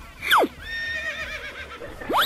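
Horse whinnying: a quick falling sweep about a third of a second in, then a long, wavering, high-pitched call.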